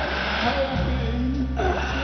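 Live rock band music: a steady heavy bass line under wavering pitched lines that slide down and back up, about a second in and again near the end.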